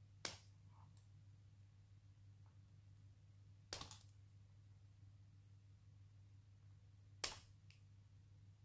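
Side cutters snipping through solid-core Cat6 copper conductors: three sharp snips a few seconds apart.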